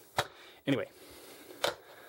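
Two short, sharp clicks about a second and a half apart, one just before and one after a single spoken word, in a quiet small room.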